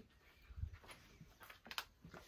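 Quiet room with faint movement noise: a soft low thump about half a second in, then a few light clicks.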